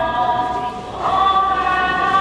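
A choir of voices singing a slow hymn in long held notes, moving to a new note about a second in.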